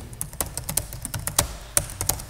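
Typing on a computer keyboard: a quick, uneven run of key clicks, several a second.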